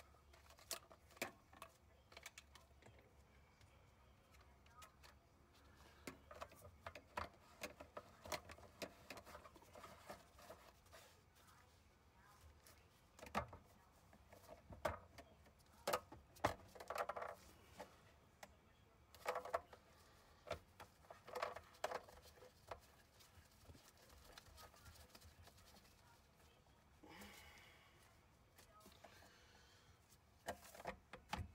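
Faint, scattered clicks and knocks of black plastic drain fittings (tailpiece, slip nuts and trap) being handled and fitted together under a kitchen sink. The knocks come in denser clusters around the middle, with a brief rustle near the end.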